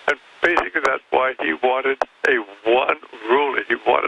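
Speech only: continuous talk-radio speech with a narrow, telephone-like sound.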